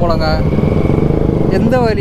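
Motorcycle engine running steadily at low road speed, heard from the rider's seat, with an even low pulsing from its firing strokes.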